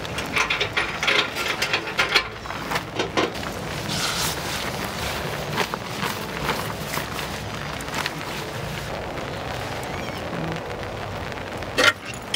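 Short clicks, rattles and knocks of a portable camp stove and gear being handled and set up on a wooden picnic table, busiest in the first few seconds. A steady hiss of light rain runs behind, with scattered small ticks.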